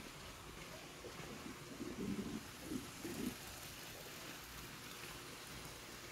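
Quiet, steady outdoor background noise, with a few faint, soft low sounds about two to three seconds in.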